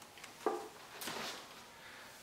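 Quiet handling of plastic seed-starting trays: a light knock about half a second in, then a soft rustle.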